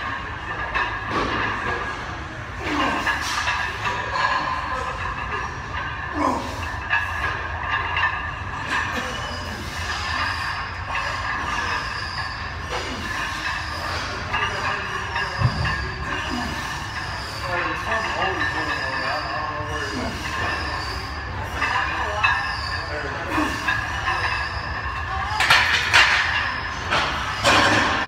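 Gym room sound: background music and voices over a steady hum, with a louder stretch near the end.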